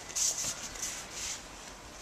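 Soft rustling and scuffing of cotton practice uniforms and bare feet brushing on the mat, four or so short hissy scuffs in the first second and a half.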